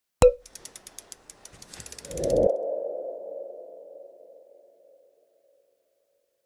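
Logo-sting sound effect: a sharp hit, then a run of quick ticks that speed up, then a swelling tone that fades away over about three seconds.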